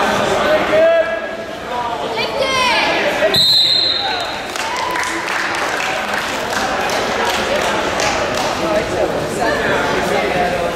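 A referee's whistle blown once, a short steady blast about three and a half seconds in, as a wrestling bout is stopped, over spectators' shouting and calling out in a gym.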